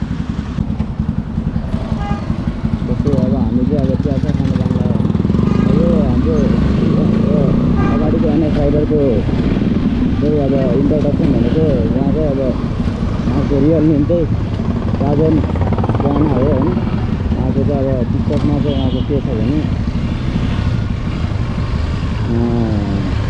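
Motorcycle engine running at low speed in city traffic, a steady low rumble mixed with wind on the helmet microphone, under a man's talking.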